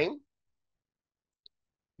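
The end of a man's spoken word, then dead silence broken by a single faint click about a second and a half in, just before his speech resumes.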